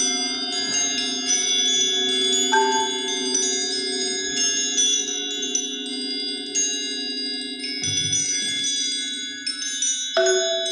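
Tuned metal percussion in a percussion ensemble: high, bell-like notes are struck one after another and left ringing over each other, above sustained lower notes. A brief low thud comes near the end.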